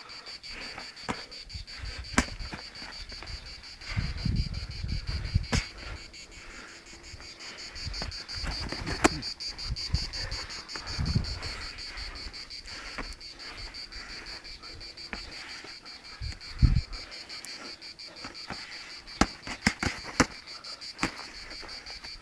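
Insects chirring steadily in dry summer grass, a high, fast-pulsing buzz. A few sharp knocks and low thuds stand out above it.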